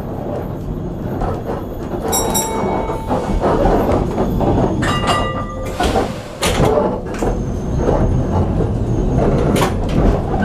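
Vintage electric tram in motion, heard from inside: a steady rumble and rattle of the car, sharp knocks from the wheels on the track, and brief high squeals about two and five seconds in as it takes a curve.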